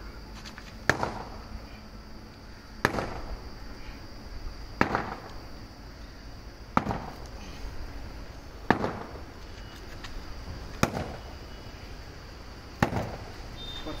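A sledgehammer striking a 24×8×8 lightweight concrete block, seven blows about two seconds apart, in a hammer strength test. The block cracks further under the blows.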